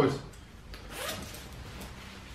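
Short rustles and scuffs of a fabric jacket being carried and handled, the loudest about a second in.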